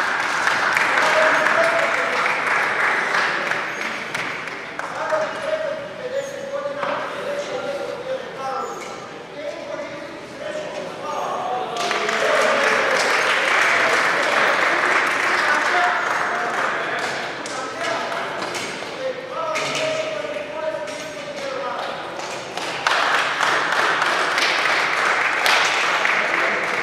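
Applause echoing in a large sports hall, coming in three long rounds that start suddenly, with a man's voice announcing between them.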